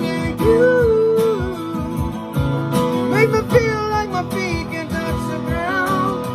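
A man singing his own pop song's melody over his recorded backing arrangement with guitar and a steady beat. The sung line holds notes and glides between them.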